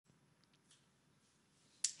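Near silence, then a single sharp, snap-like click near the end.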